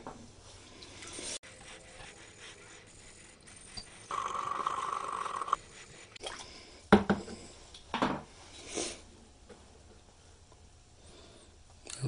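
A small brush scrubbing vinegar-loosened rust off a steel brush-axe blade: a steady rasping rub for about a second and a half starting about four seconds in, then a few short scrapes or knocks.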